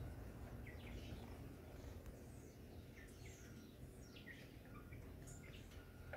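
Faint, scattered chirps of small birds over a low, steady background rumble.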